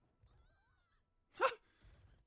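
A short, high-pitched vocal yelp about one and a half seconds in, over faint soft background sound.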